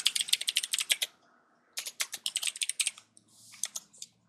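Typing on a computer keyboard: two quick runs of keystrokes, the first ending about a second in and the second from just under two seconds to about three seconds, with a short pause between.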